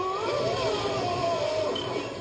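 Film-trailer sound effect on a VHS soundtrack: a wavering tone that glides down in pitch over about a second and a half, over a steady low hum.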